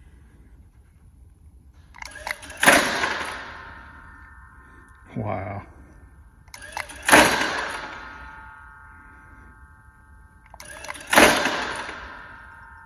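Champion WheelyBird 2.0 clay target thrower dry-fired three times, about four seconds apart. Each time a short whir comes just before a loud sharp metallic clack of the throwing arm, with a ringing that dies away over a couple of seconds.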